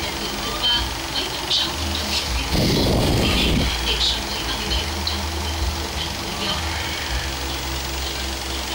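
A television broadcast plays in the room, with music and a faint voice, over a steady low hum. About two and a half seconds in, a louder burst of noise lasts for about a second.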